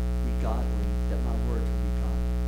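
Steady low electrical mains hum in the sound system, with faint voice fragments about half a second in and again about a second in.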